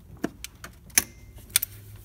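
A few sharp, irregular metallic clicks of a socket wrench and its extension working on the tight retaining bolts of a Toyota 1KD-FTV diesel's suction control valve.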